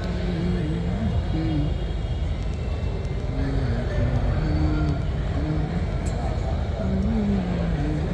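A man's voice talking in the background, the words not clear, over a steady low rumble.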